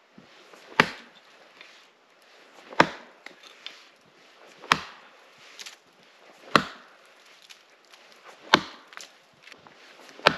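Axe chopping into a fallen tree's frozen wood, five solid blows about two seconds apart.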